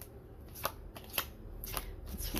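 Tarot cards being shuffled by hand: three crisp clicks of cards about half a second apart, over quiet room tone.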